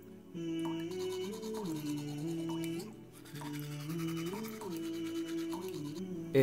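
Toothbrush scrubbing teeth in quick back-and-forth strokes, pausing briefly about halfway through, over background music of slow held notes.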